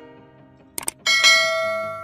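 Subscribe-button overlay sound effect: a quick double click, then a notification bell ding about a second in that rings out and slowly fades, over faint background music.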